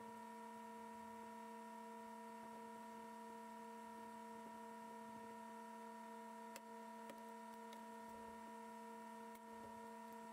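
Near silence: a faint, steady electrical hum made of several constant tones.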